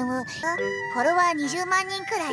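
An anime character speaking Japanese dialogue over light background music with a steady high chiming tone.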